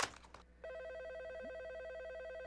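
Desk telephone ringing with a fast electronic trill, starting about half a second in, after a brief knock.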